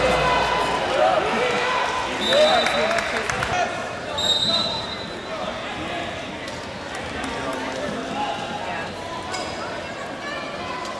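Basketball game in an arena: a ball bouncing on the court among crowd and player voices, with two short high-pitched tones, one about two seconds in and one about four seconds in.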